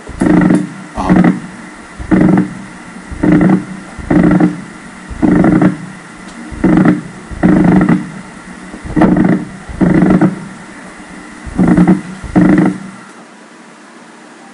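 EMG loudspeaker playing a myokymic discharge: about a dozen short bursts of motor unit firing, roughly one a second at slightly uneven spacing. The bursts stop about a second before the end.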